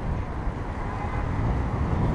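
Wind rumbling on the microphone of a camera riding on a moving bicycle, mixed with road traffic noise from the street alongside. The noise is steady and grows gradually louder toward the end.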